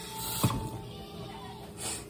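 Kitchen handling sounds: one sharp knock a little under half a second in, then a brief hiss near the end.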